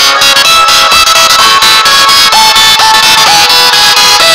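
Loud electronic background music with a synth line whose notes slide up into each pitch.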